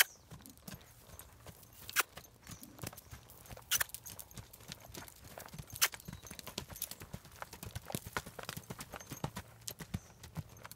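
Hoofbeats of a young horse cantering on a dirt lunging circle: a steady run of soft knocks, with a few louder sharp clicks about every two seconds.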